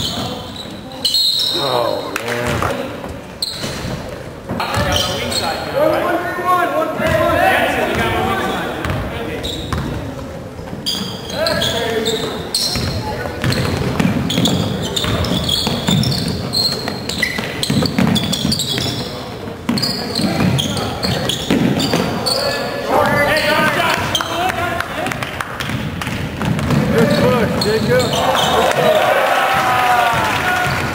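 Basketball bouncing on a hardwood gym floor during play, repeated impacts with echo, mixed with shouted voices that grow busier over the last several seconds.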